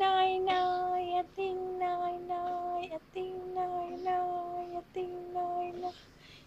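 A young girl singing in long, steady held notes, four phrases with short breaks between them, stopping just before the end.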